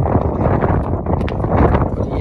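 Wind buffeting the phone's microphone, a loud, steady rumbling rush with a few faint clicks.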